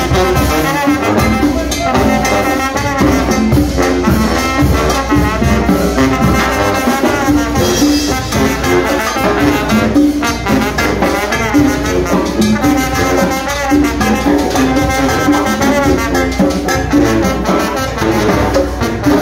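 Chichero brass band playing live: trombone, trumpets and saxophone carry the tune over sousaphone, bass drum, snare and cymbals keeping a steady, even beat.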